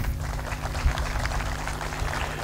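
Crowd applauding, a dense patter of many claps, with a faint steady low hum underneath.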